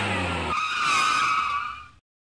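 Car engine running, cut off abruptly about half a second in by a high tire screech that fades away toward the end.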